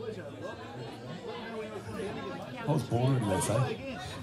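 Indistinct chatter of several people talking at once, with one nearer voice louder in the second half; no music is playing.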